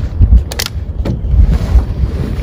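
Wind buffeting a clip-on microphone: an uneven low rumble, with a short sharp click a little over half a second in as the backpack is handled.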